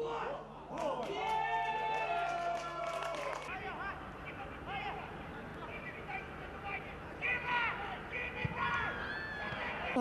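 Footballers shouting and calling to each other on the pitch during a match, over outdoor ambience. There is one stretch of shouts about a second in and another near the end.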